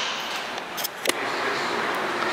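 Steady background hiss of a shop interior with a few light clicks, as of an item being handled.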